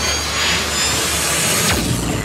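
Whooshing, rushing sound effect of a TV show's animated logo intro: a loud noisy sweep over a deep bass rumble, with a quick downward swoop just before the end.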